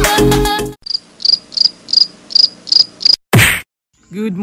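Music cuts off within the first second, and then a cricket chirps in a steady rhythm, about three high chirps a second. Near the end there is a short, loud burst of noise.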